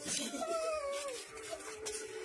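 A single cat-like meow that falls in pitch over about a second, over a steady humming tone in the background.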